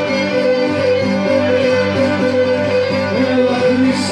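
Greek folk dance music, with a bowed fiddle-type melody over plucked string instruments, playing steadily.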